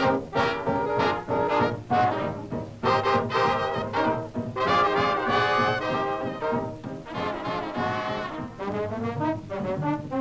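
A 1920s–early-1930s hot jazz band record played from vinyl, in an instrumental passage with brass out in front over a steady, busy rhythm.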